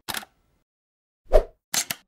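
Sound effects of an animated logo intro: a brief click at the start, a louder pop a little past the middle, then two quick hissy clicks just before the end, with dead silence between them.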